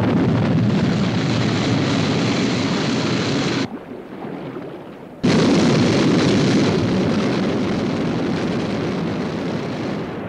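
Rocket-launch sound effect for a submarine-launched interceptor jet: a loud, even roar that starts suddenly, drops away for about a second and a half before four seconds in, then cuts back in suddenly and slowly fades.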